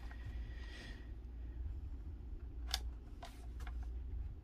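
A paper scrapbook layout being handled: a soft paper rustle in the first second, then two light taps about half a second apart near the end, over a low steady hum.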